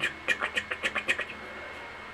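Laptop keyboard keys tapped in a quick run of about a dozen light clicks over a little more than a second, then stopping.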